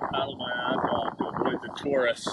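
Wind on the microphone and choppy sea water around a sea kayak, a steady rushing noise, with a man's voice talking faintly under it.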